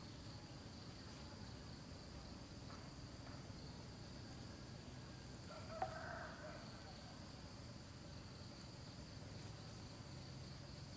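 Faint, steady high-pitched insect drone in the background, with a short click and a brief sound about six seconds in.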